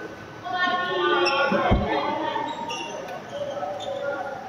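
Voices of people talking in a large sports hall with hard surfaces, with one low thud on the floor a little under two seconds in.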